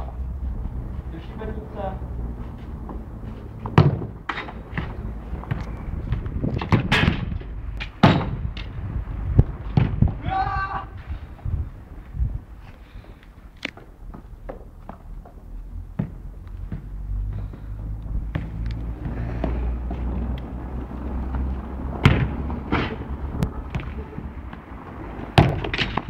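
A football being kicked: sharp thuds come every few seconds, a handful in all, with voices calling out in between.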